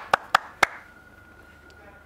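A few people clapping by hand, the claps thinning out and stopping about half a second in. The room then goes quiet apart from a faint steady high tone.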